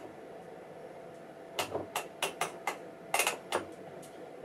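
A series of about eight sharp mechanical clicks, bunched in the second half, from controls being worked on bench test equipment, over a faint steady electrical hum.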